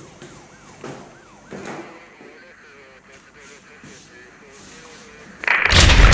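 Faint police siren, its pitch quickly rising and falling, in the first couple of seconds, then a sudden loud noisy burst near the end.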